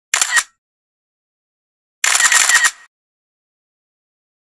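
Camera shutter sound: one short shutter burst just after the start, then a longer run of rapid shutter clicks about two seconds in, with dead silence between.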